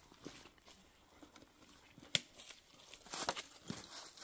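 Quiet rustling and handling of a fabric tool bag being rummaged through, with a sharp click about two seconds in and a short burst of rustling a little after three seconds.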